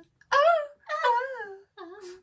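Playful high-pitched voice making three wordless sing-song calls, each sliding up and then down in pitch.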